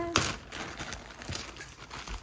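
Clear plastic bag crinkling and rustling as hands work it open, loudest just after the start.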